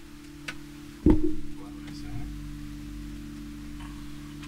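A steady low hum with one sharp thump about a second in.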